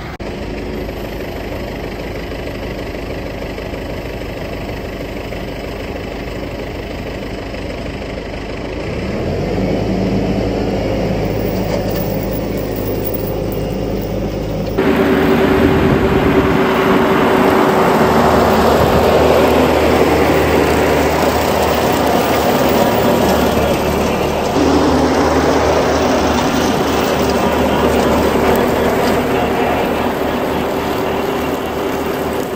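Tractor engine running with a RhinoAg TS10 flex-wing rotary cutter. The engine rises about nine seconds in, and from about fifteen seconds in it is louder, with a steady tone, as the cutter mows tall grass at a lowered cutting height.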